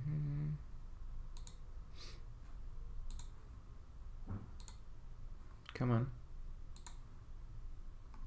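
Computer mouse clicking: about half a dozen separate sharp clicks, spread out a second or so apart.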